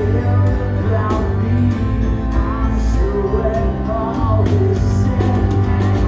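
Rock band playing live, with piano, electric guitar and drums, recorded from within the audience.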